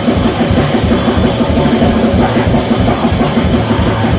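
Hardcore punk band playing live, drum kit to the fore.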